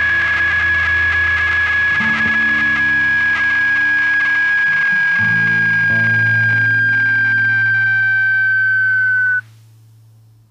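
Closing bars of a folk rock song: a high held tone drifts slightly down in pitch over changing low notes. The music cuts off sharply near the end, leaving a faint fading tail.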